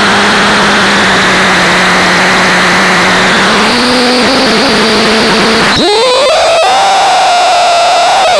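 Harsh electronic noise from a handmade noise box fed through a Yamaha FX500 effects processor as its knobs are turned: a dense hiss over a steady low hum, which wavers about halfway through and then glides up into a higher held tone near the end.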